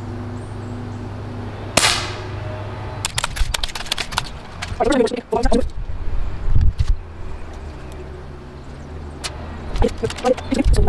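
Crosman Legacy 1000 multi-pump .177 air rifle, charged with twelve pumps, firing once about two seconds in: a single sharp crack with a short ring-out. A run of light clicks follows, over a steady low hum.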